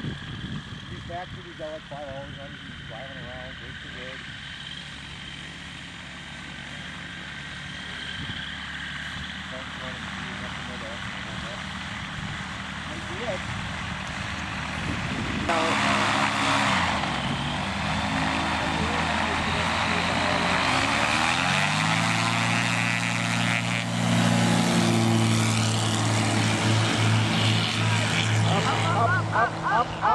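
Light kit airplane's piston engine and propeller running as it taxis on grass. About halfway through it gets louder, its pitch dipping and then climbing, and it climbs again a few seconds later to run louder and steadier near the end.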